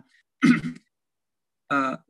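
A person clearing their throat once, briefly, in a pause between spoken words.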